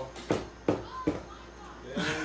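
Three sharp knocks or bumps, a little under half a second apart, in the first second or so.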